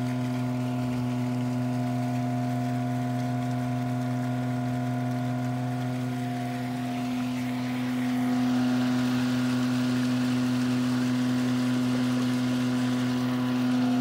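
Septic vacuum truck's pump running with a steady drone while muddy water surges and churns up out of an opened sewer line; a hiss of rushing water and air grows louder about eight seconds in.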